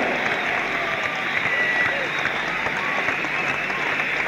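Large arena crowd cheering and applauding, with scattered shouts and a faint whistle.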